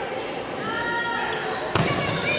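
Players' voices calling out in a gym, then one sharp smack of a volleyball being hit near the end.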